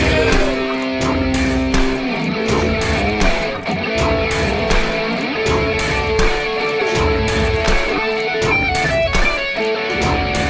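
Rock song's instrumental break: distorted electric guitar playing long held notes over a steady drum beat, with no singing.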